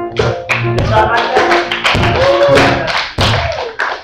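Live worship music: a man singing into a microphone over keyboard accompaniment, with repeated sharp percussive hits. The music stops abruptly near the end.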